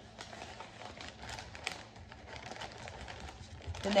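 Wrapping paper rustling and crinkling as it is folded and pressed around a parcel by hand, with many short, irregular crackles.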